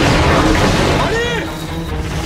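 Explosion rumbling and dying away under film-score music, with a short voice cry that rises and falls about a second in.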